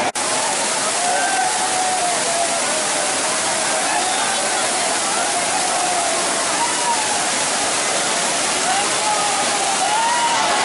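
Steady rush of a broad waterfall pouring over rock steps into shallow rapids, with many people's voices calling and chattering over it. The sound drops out for an instant just after the start.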